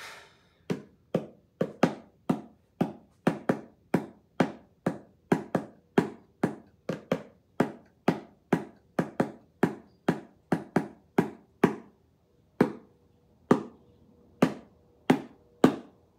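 Pair of wooden bongo drums played by hand: a steady beat of sharp slaps, about two to three a second, slowing near the end to single strikes spaced further apart.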